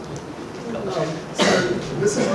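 A single cough about one and a half seconds in, louder than the low, indistinct voices around it.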